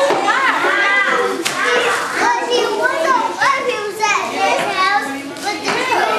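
A roomful of young children chattering and calling out all at once, their high voices overlapping without a pause.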